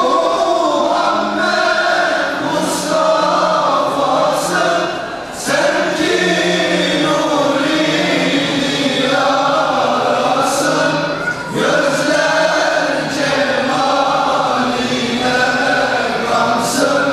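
Male choir singing a Turkish ilahi (Islamic hymn). The phrases are long and sustained, about six seconds each, with brief breaths between them.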